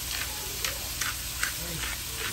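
Diced celery, carrot and onion sizzling steadily in butter and oil in a pot, with a hand-twisted pepper grinder crunching over it about five times.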